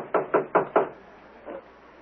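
Knocking on a door: a quick series of raps that ends within the first second.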